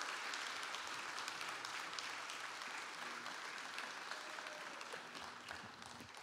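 A congregation applauding, fairly faint, dying away near the end.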